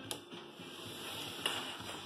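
Music playing quietly from a JVC UX-A3 micro stereo's speakers, with two faint clicks, one right at the start and one about a second and a half in, as the unit is handled.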